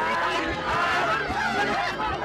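Film soundtrack played backwards: garbled reversed voices over music, with a low thump about twice a second.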